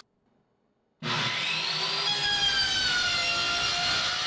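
A power saw cutting through the oriented strand board front panel of a wooden crate. It starts abruptly about a second in, and its whine sags slowly in pitch as it cuts.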